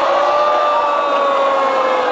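A single long held note, sinking slightly in pitch, over a steady crowd hubbub.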